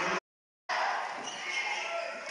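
Basketball game ambience in a gym: a low crowd murmur with a ball bouncing on the hardwood court. Near the start it breaks off into about half a second of dead silence at a splice between clips.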